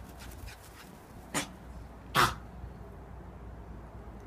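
A small dog giving two short, sharp barks during play, the second louder, about a second and a half and two seconds in.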